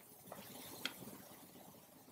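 Quiet room tone with one faint short click a little under a second in.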